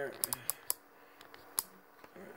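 Several light, sharp clicks in the first second and one more near the end, as fingers turn a small resistor adjustment knob.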